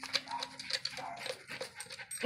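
Jack Russell terriers pawing and nosing at a perforated plastic rat tube in loose straw: a run of quick rustles and scrapes, with a few short whines as they try to get at the rat inside.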